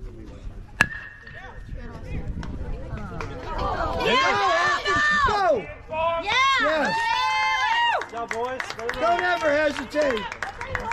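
Metal baseball bat striking the pitched ball about a second in: a sharp ping that rings briefly. Spectators then yell and cheer loudly from about halfway through.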